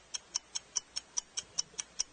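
Game countdown timer ticking quickly and evenly, about five sharp ticks a second.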